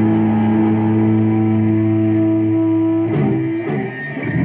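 Electric guitar chord held through an amplifier, ringing steadily, then breaking up into a ragged, uneven jangle about three seconds in.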